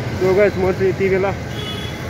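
A man talking over steady street traffic noise.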